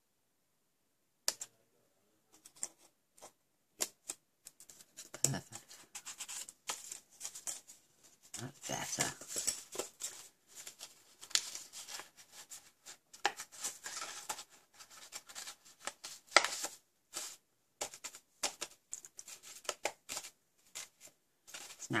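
Scissors snipping card, then the crackle and rustle of the folded card box being handled and pressed, with scattered small clicks and taps. The sounds come in irregular short bursts after about a second of quiet.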